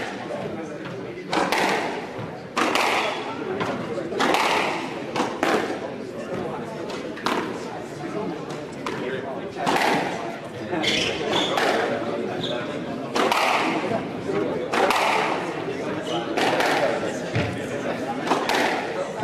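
Squash ball being hit to and fro during the pre-match warm-up: sharp racket strikes and the ball smacking off the walls, about one every second or so, often in quick pairs, echoing in a large hall.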